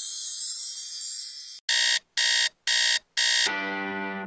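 A high, shimmering sparkle effect fades out. Then a digital alarm clock beeps four times in an even rhythm, about two beeps a second. Music starts near the end.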